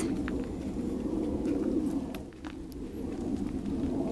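A dove cooing: low, soft coos that repeat, easing off briefly a little after two seconds in.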